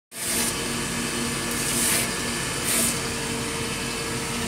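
Surface grinder running, its abrasive wheel grinding a steel workpiece with a steady motor hum. A high grinding hiss swells three times as the reciprocating table carries the work under the wheel.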